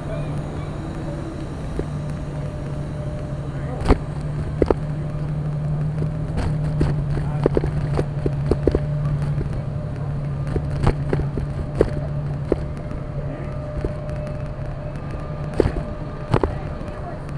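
City street ambience with traffic: a steady low hum throughout, broken by scattered sharp clicks and knocks, a few of them loud.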